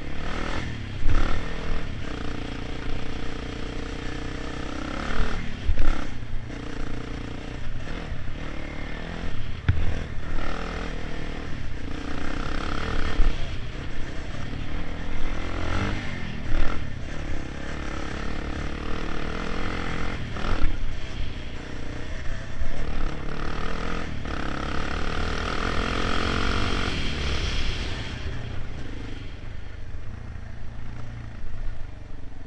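Quad (ATV) engine running under load as it is ridden along a rough dirt trail, its pitch rising and falling with the throttle in frequent swells.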